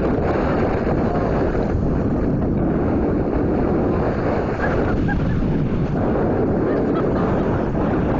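Steady wind buffeting the microphone, with small waves washing onto the sand beneath it.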